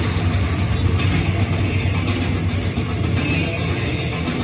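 Rock music with a heavy bass line played over the stadium PA, with many short sharp strikes through it that fit a crowd clapping along.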